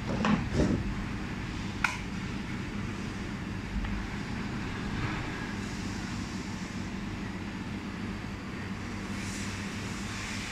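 Steady hum of a desktop welding machine's cooling fan and water chiller running. A few knocks come near the start, and there is one sharp click about two seconds in.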